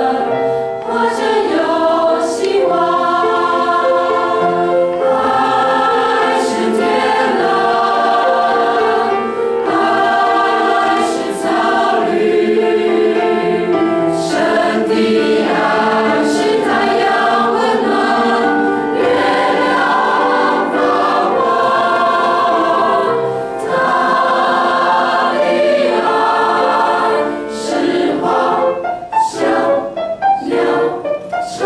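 Mixed choir of men and women singing a hymn together in parts, with sustained notes that shift pitch continuously.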